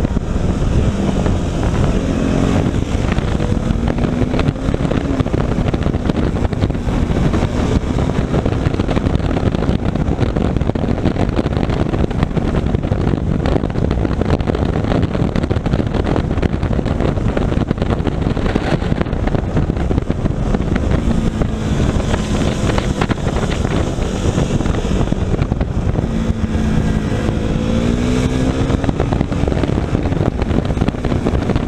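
Onboard sound of a KTM motorcycle at road speed: steady wind rush over the microphone with the engine running underneath, its pitch rising as it accelerates a few seconds in and again near the end.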